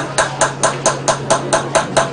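Small silversmith's hammer striking a piece of sheet metal on a steel stake anvil in a fast, even rhythm, about four to five sharp ringing strikes a second.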